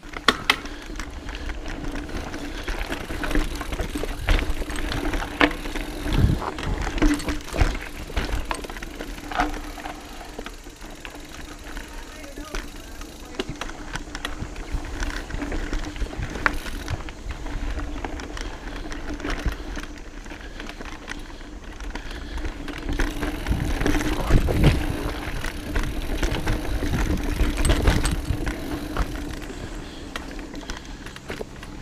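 Mountain bike ridden fast down a dirt singletrack, heard from a camera mounted on the bike: the bike rattles and clatters over roots and rocks, with a steady low hum and rumble underneath. The clattering is heaviest about six seconds in and again near the end.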